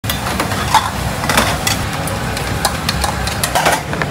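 Hawker stall kitchen at work: a steady low rumble with repeated clinks and knocks of a metal ladle against bowls and a pot, the loudest near the end.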